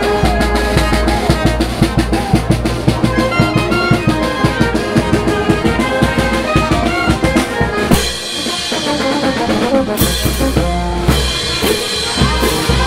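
A street brass band playing a lively tune: saxophones and brass over a bass drum and snare keeping a fast, even beat. About eight seconds in, the bass drops out for a couple of seconds, then comes back.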